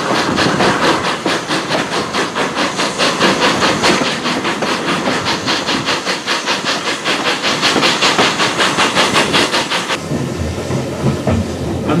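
Exhaust beats of the two-cylinder BR Standard Class 2 steam locomotive 78019 working a train, heard from an open coach window: a quick, even rhythm of about four beats a second. About ten seconds in the beats give way to the duller rumble of the coach running, heard inside the compartment.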